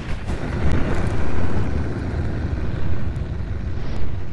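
Cinematic outro sound effect: a loud, low rumbling roar with a few faint ticks. It swells in the first second and a half, then eases slightly.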